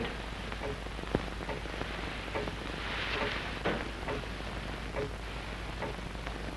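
Hiss and crackle of an old optical film soundtrack, with one sharp click about a second in and a few faint knocks.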